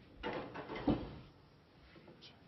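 Snooker balls knocking on the table: two sharp clicks about two-thirds of a second apart, the second the louder.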